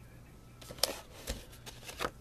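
Cardboard and paper packaging being handled: a run of crackles and ticks, the sharpest a little under a second in, and a soft thump about halfway.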